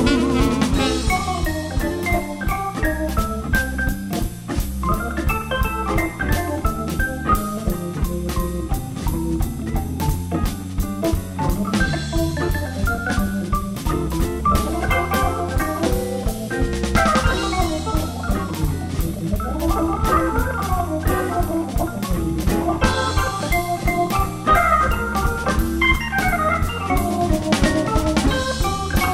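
Blues band playing an instrumental break with no singing: an organ carries the melody over a drum kit keeping a steady beat.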